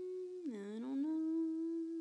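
A person humming a long, drawn-out "hmm" of doubt and hesitation. It is held on one pitch, dips briefly about half a second in, then is held again.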